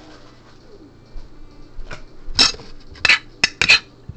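Kitchen clatter of dishes and utensils being handled: quiet at first, then from about halfway a series of sharp clinks and knocks.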